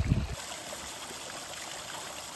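Small hillside stream trickling steadily down a mossy bank into a shallow pool.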